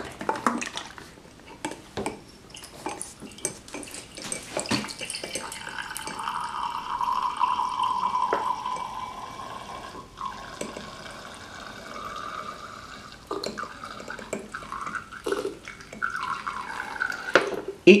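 Vinegar being poured from an upturned plastic bottle into a small glass beaker, running in two spells: a longer one from about five to ten seconds in and a fainter one near the end, as the beaker is topped up to 50 ml. A few light taps of the bottle and glass being handled come first.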